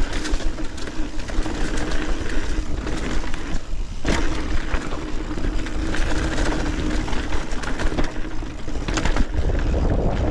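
2021 Santa Cruz 5010 mountain bike riding fast downhill over a chunky dirt and rock trail. Steady tyre noise mixes with rapid rattling clicks of chain and frame, and wind rumbles on the microphone. A sharp knock comes about four seconds in, just after a brief lull.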